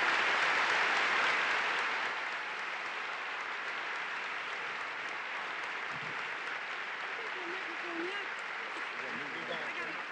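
A large audience applauding, loudest in the first second or two and then holding steady, with voices rising through it near the end.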